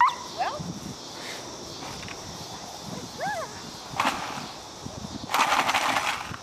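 A dog barks, once right at the start and again about three seconds in. Near the end comes a loud, rattling burst of noise lasting under a second.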